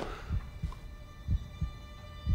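Low, heartbeat-like thuds in a tension underscore, coming in pairs about once a second over a faint steady drone.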